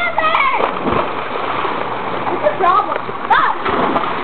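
Swimming-pool water splashing and churning, with children's high voices calling out over it a few times.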